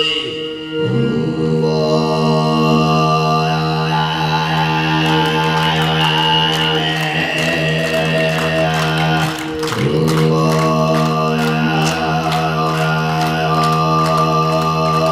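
Mongolian throat singing (khöömei): a steady low vocal drone with a high whistling overtone melody above it, accompanied by a bowed morin khuur (horsehead fiddle). The drone breaks off briefly about a second in and again near ten seconds, then resumes.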